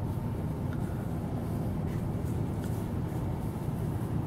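Steady low outdoor rumble with no voices, with a few faint clicks scattered through it.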